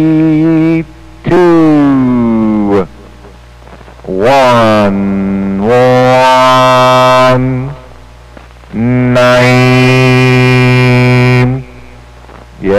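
A man's voice sent over a CB radio transmitter, making long drawn-out sung vowel calls without words. There are four or five of them with short gaps between: some are held on one note, and some glide down or rise and fall in pitch.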